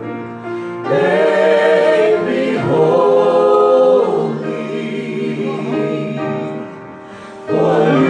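Gospel worship singing: several voices singing a slow song through microphones, holding long notes, with a short softer lull about seven seconds in before the next phrase begins.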